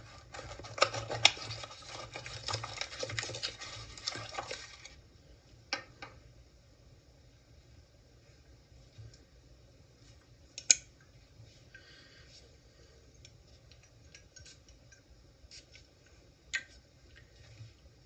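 Plastic wrap and a cardboard box rustling for the first five seconds or so as a new cologne box is unwrapped and opened. After that come a few light clicks and taps as the glass cologne bottle is handled, with one sharper click about ten and a half seconds in.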